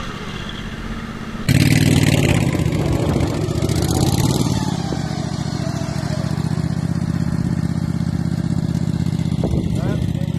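Small gasoline engines running steadily with a pulsing beat. About a second and a half in, the sound jumps abruptly louder, and the engine rises and falls once around four seconds in.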